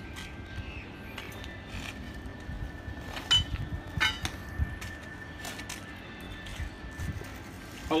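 A few sharp metal clinks and knocks from steam-hose fittings being picked up and handled, mostly three to five seconds in, over a low steady hum and a faint thin steady tone.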